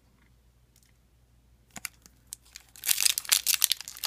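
Foil wrapper of a Magic: The Gathering booster pack being torn open and crinkled by hand, a dense crackling that starts about two and a half seconds in after a faint, near-quiet start.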